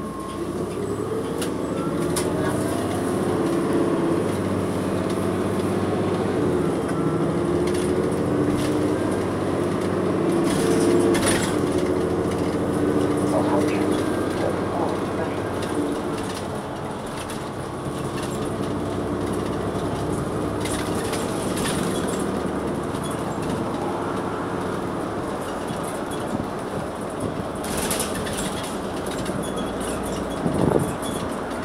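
Cabin sound of a New Flyer XN40 compressed-natural-gas city bus under way, heard from the rear seats: the Cummins Westport ISL-G engine and Allison transmission drone steadily, rising a little in pitch over the first half and then settling lower, with occasional rattles and knocks from the body and fittings.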